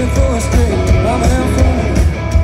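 Live rock band playing loud: a male lead vocal over electric guitars, heavy bass and drums with steady cymbal hits.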